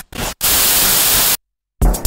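A break in a techno track: a short blip, then a burst of white-noise static lasting about a second that cuts off suddenly, a moment of silence, and the kick-drum beat coming back in near the end.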